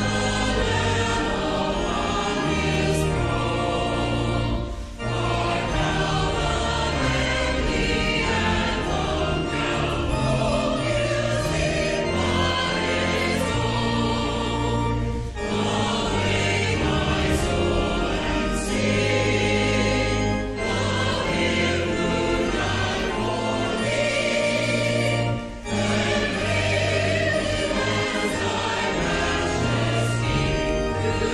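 Church music: voices singing in chorus with sustained instrumental accompaniment, with a few brief pauses between phrases.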